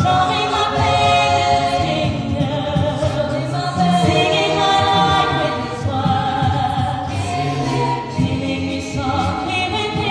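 A mixed-voice a cappella group singing into handheld microphones: layered sustained vocal chords over a sung bass line, changing chord every second or so.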